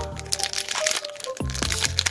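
Foil booster-pack wrapper of a Pokémon trading card pack crinkling and crackling as it is torn open by hand, over background music.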